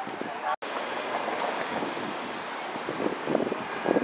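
Busy city street ambience: a steady hum of traffic with passers-by talking. About half a second in, the sound drops out completely for a moment.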